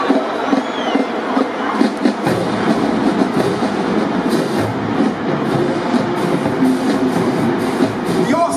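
A marching band playing in a large domed stadium, a dense, echoing wash of drums and band sound. Deeper drums come in about two seconds in, with repeated sharp cymbal-like hits through the middle.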